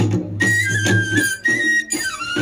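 Tripuri folk music for the Hojagiri dance: a flute plays a melody of long held notes, stepping down in pitch, over a steady drum beat.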